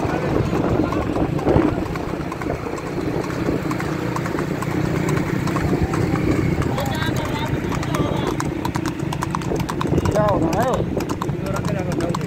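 A horse's hooves clip-clopping fast on asphalt as it pulls a wooden racing cart, over a steady rush of road and wind noise. A man's shouted call rises and falls about ten seconds in.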